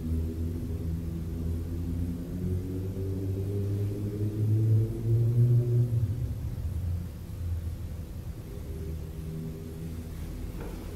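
Grand piano sounding soft, held low-register chords, several notes at once, with the upper notes shifting for a while. The sound swells slightly and then fades down over the last few seconds.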